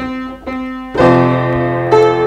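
Piano playing a couple of single notes, then a full F chord with low bass notes about a second in, held ringing with the sustain pedal down.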